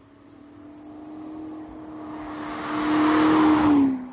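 Audi SQ5 V6 driving by at speed: the engine note holds steady while it and the tyre roar grow steadily louder as the car approaches. The engine note drops in pitch as it passes, just before the sound cuts off abruptly.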